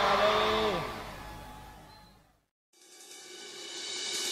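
The gap between two sholawat tracks. A voice trails off within the first second over a fading cymbal wash, and the music dies away to a moment of silence just past the halfway point. The next track then fades in with a rising cymbal shimmer, its drums not yet started.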